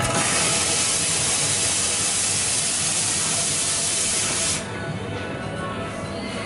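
Espresso machine steam wand hissing steadily, then cutting off about four and a half seconds in, with background music underneath.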